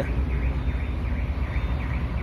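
A truck's diesel engine running steadily at low speed, heard inside the cab, with a faint wailing siren over it, which the driver calls a big police siren.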